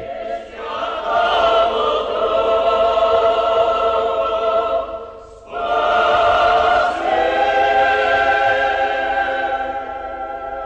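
Mixed choir of men's and women's voices singing Orthodox church music unaccompanied, holding long sustained chords. The singing breaks off briefly about halfway, then comes back in on a new phrase and moves to a new chord soon after.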